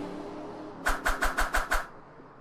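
End-card logo sound effect. A low tone fades out, then about a second in come six quick drum-like hits, about six a second, which stop short of the end.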